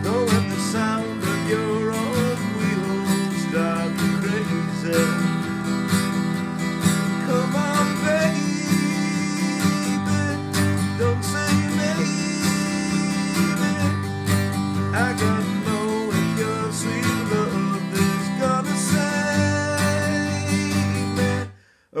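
Steel-string acoustic guitar strummed steadily through a chorus's chords, with a man singing along. It cuts off suddenly just before the end.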